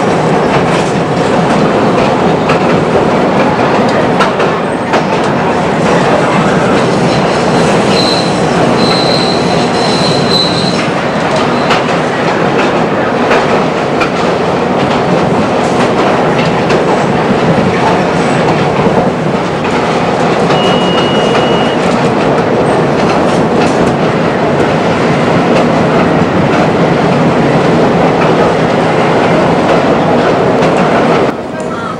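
Chicago L rapid transit train running, heard from inside the car: steady wheel and rail noise, with a thin high squeal from about eight to eleven seconds in and a shorter one a little past twenty seconds.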